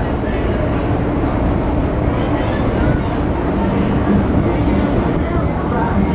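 Steady low engine rumble aboard a ferry as it manoeuvres in to dock, with passengers' voices faint over it.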